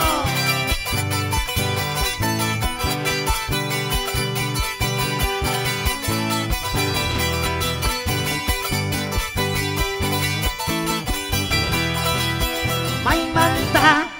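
Live band dance music with a steady, bass-heavy beat and plucked guitar, which cuts off suddenly at the very end.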